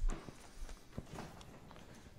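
Chalk on a blackboard, faint: a few light taps and scraping strokes.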